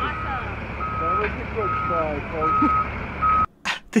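Reversing alarm of a front loader, a steady single-pitch beep repeating evenly a little more than once a second (five beeps), over a low engine rumble with voices in the background. It cuts off suddenly about three and a half seconds in.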